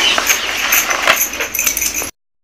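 Thin plastic sheets crackling and bangles clinking lightly as rolled papads on the sheets are lifted and laid down, a busy run of small crackles and chinks.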